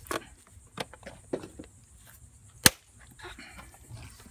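Plastic air filter box cover being pressed and snapped into its clips by hand: a few light clicks and handling noises, then one sharp snap about two and a half seconds in.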